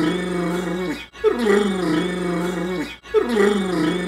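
A drawn-out, low, groaning voice-like sound that slides down in pitch at its start and then holds steady. The same clip of about two seconds plays back to back, looped three times with a sharp break between repeats.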